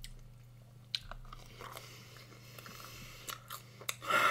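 Close-miked chewing of a mouthful of food, quiet, with a few sharp crunches, the clearest about a second in, over a faint steady low hum.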